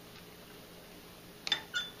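Quiet room tone, then about one and a half seconds in a short clink with a brief ring: the pH meter's glass electrode knocking against the drinking glass it stands in as it is picked up.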